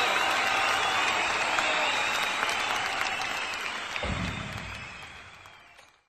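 Audience applause, a steady clapping that gradually fades out to nothing. A low thump comes about four seconds in.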